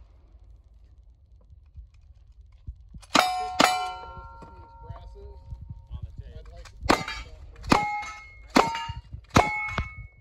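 Six gunshots at steel targets, each followed by the steel ringing. The first two come close together about three seconds in, from a lever-action rifle. After a pause, four more follow at a steady pace of a little under one a second, from a pump-action shotgun.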